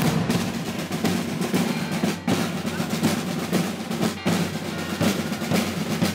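Snare drums rolling steadily over bass drum beats in a processional march rhythm, with two brief breaks.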